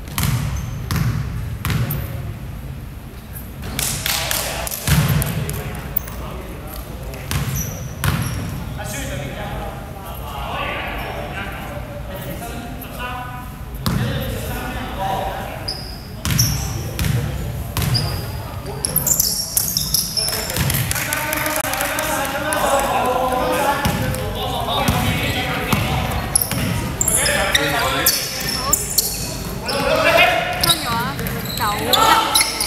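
Basketball bouncing again and again on a wooden gym floor during free throws and then a dribble up the court, echoing in a large sports hall.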